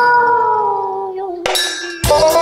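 A female singer holds one long note on her own as the accompaniment drops out, the pitch sinking slowly as it fades. About a second and a half in, a sharp metallic strike rings out just before the band comes back in.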